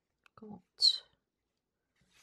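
A woman whispering briefly under her breath, ending in a short hissing sound like an 's'.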